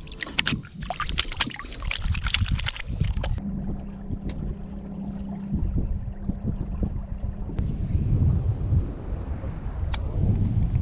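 Water splashing and dripping around hands held in the water as a redfish is released, for about the first three seconds. Then wind on the microphone, with a steady low hum for a few seconds in the middle.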